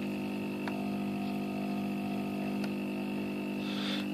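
Electric motor driving a shrouded propeller, running at a steady low speed with an even hum of many steady tones. It responds only slowly to the RC throttle.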